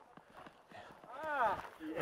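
Faint scattered clicks and steps, then a man's voice calls out briefly about a second in.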